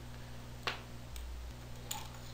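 Two light clicks about a second apart, with a fainter one between, from hands and test probes working on a bare laptop mainboard as it is powered up, over a steady low electrical hum.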